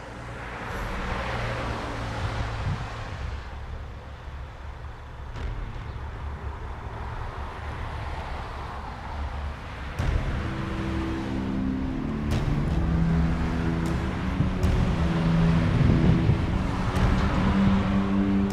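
Road traffic: cars passing on the street, their tyre and engine noise swelling and fading as they go by. About halfway through, low steady tones come in and the sound grows louder.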